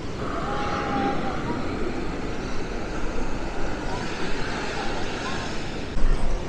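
Steady wash of surf and wind noise on an open beach.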